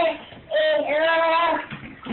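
A small child singing: one held note ends at the start, then after a short pause comes a long held note that wavers slightly in pitch.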